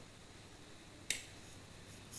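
Quiet room tone with a single sharp, high click about a second in.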